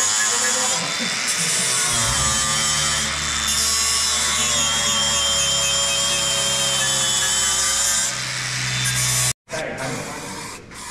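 Angle grinder running with a steady high whine as its disc grinds the bare steel of a car's engine bay. It cuts off suddenly near the end.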